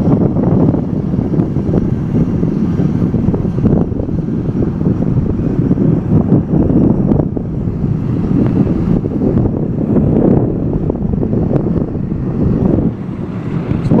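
Crop-duster airplane's engine running steadily on the ground, mixed with wind buffeting the microphone.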